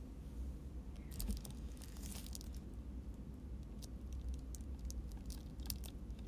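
A plastic drink bottle crinkles as it is handled for about a second and a half, starting about a second in, followed by scattered light clicks, over a faint low hum.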